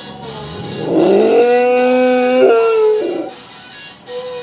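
English bulldog howling: one long howl that glides up, holds steady, then dips slightly before stopping about three seconds in.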